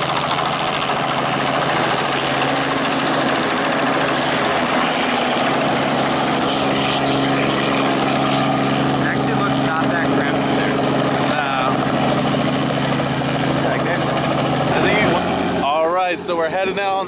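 Robinson R44 helicopter hovering and manoeuvring low over the tarmac close by: a loud, steady drone of its piston engine and rotor. A brief high hiss comes near the end.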